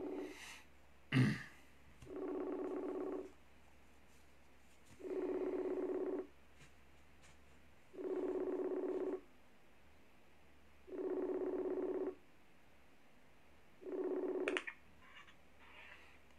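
A buzzy ringing tone, steady in pitch, sounding five times for about a second each, about three seconds apart, like a call ringing on a phone or computer. A single cough comes about a second in.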